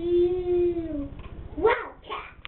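A young child's voice holding one long, loud, drawn-out call that arches gently in pitch, then a short rising-and-falling cry a little before the end.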